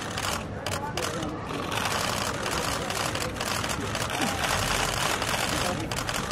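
A large outdoor crowd talking and calling out all at once, a steady babble of many overlapping voices with no single voice standing out.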